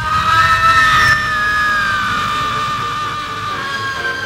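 Horror soundtrack sting: a shrill, screech-like sustained sound starts abruptly and is loudest in the first second. It then slides slowly down in pitch and fades.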